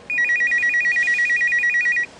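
Telephone ringing with an electronic ring: a rapid trill that alternates between two high pitches about ten times a second, in one continuous ring.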